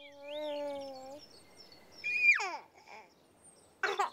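A baby cooing and babbling: a long held note, then about two seconds in a loud high squeal that slides steeply down, and short giggles near the end.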